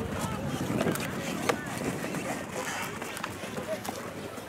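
People talking in the background outdoors, with a few separate sharp knocks that fit a horse's hooves striking the ground as it gaits past.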